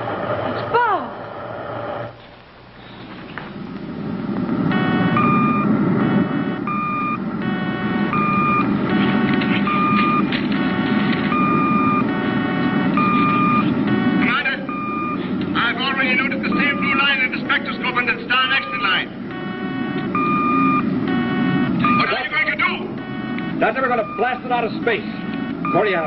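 Sci-fi spaceship sound effect: a low rocket-engine rumble with irregular electronic beeping over it, and a burst of fast warbling chirps midway.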